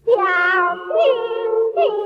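A song starts abruptly: a high singing voice comes in loudly, holding long notes with short slides in pitch at about one second and near the end, over a steady accompanying tone.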